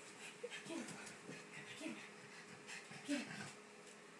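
Pug making a string of short vocal noises, several in four seconds with the loudest about three seconds in, worked up over a ball toy.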